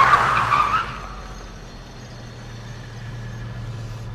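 Car tyres skidding with a squeal, cutting off about a second in and leaving a low steady hum.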